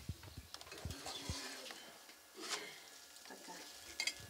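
A gyuzleme flatbread being turned over in a pan on a wood-burning stove: light knocks and scrapes of the pan and utensil, with a louder scrape about halfway through, over a faint sizzle of the frying dough.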